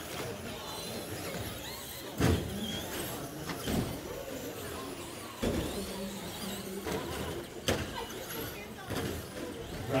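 Traxxas Slash RC short-course truck's electric motor whining as it runs on the track, with a few sharp knocks and background chatter in an echoing hall.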